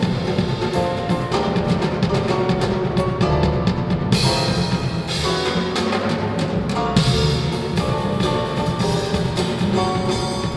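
A live jazz piano trio playing: grand piano, plucked upright double bass, and a drum kit with cymbals. The cymbals brighten a little over four seconds in.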